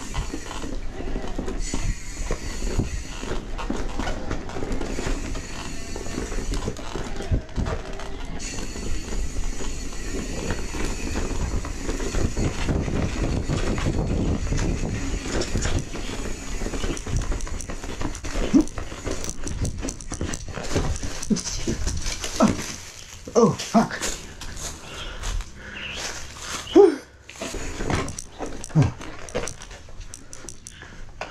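2022 Specialized S-Works Levo electric mountain bike ridden along dirt singletrack: steady rolling and wind noise. In the last third it turns to uneven clatter and knocks over rocks, with a few short vocal calls.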